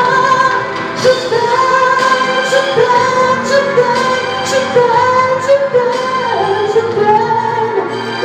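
A live singer singing long, held notes into a handheld microphone over accompanying music with a light, steady beat, amplified through a PA speaker.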